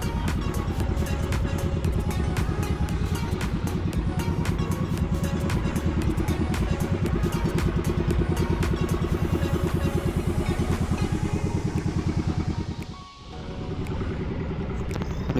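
The engine of a motorized outrigger boat running steadily while under way, a fast, even run of exhaust pulses. The sound dips briefly near the end.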